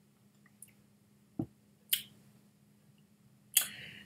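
Soft mouth sounds of tasting a sip of whisky: a few separate lip and tongue smacks and clicks, then a louder breath near the end.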